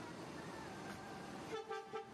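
Coach horn giving two short toots near the end, over steady engine noise as the bus pulls away from the platform.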